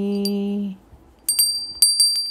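A held chanted note ends well under a second in. Then a small high-pitched bell is struck twice, about half a second apart, and its ring dies away shortly after.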